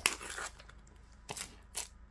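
Utility knife blade slicing through the tape and cardboard edge of a mailer: a sharp cut at the start that trails off, then two short scratches of the blade later on.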